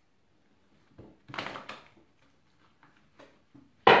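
A deck of Rider-Waite tarot cards being shuffled by hand: one brief rustle of cards about a second and a half in, then a few light clicks of the cards.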